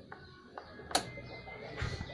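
Ignition key switch of a Honda Beat eSP scooter turned to off, a single sharp click about a second in, with a few faint ticks before it. The key is switched off as a step in resetting the ECU, with the diagnostic connector jumpered, to clear blinking trouble code 52.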